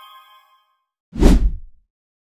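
The last ringing notes of a chiming intro jingle fade out, then about a second in comes a single short whoosh sound effect with a deep boom underneath, dying away within about half a second.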